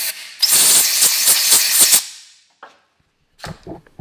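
Compressed-air blow gun blasting into a freshly tapped bolt hole in an outboard engine block to clear out metal chips and brake cleaner: a loud hiss starting about half a second in and cutting off about two seconds in. A few faint knocks near the end.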